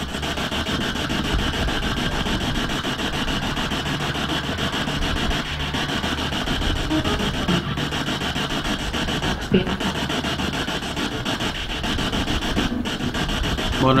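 P-SB7 spirit box sweeping through radio stations: a continuous, rapidly chopped radio static that runs steadily, with no clear words coming through.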